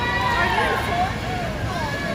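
Spectators shouting and cheering on young swimmers during a race, several raised voices overlapping over the steady din of an indoor pool hall.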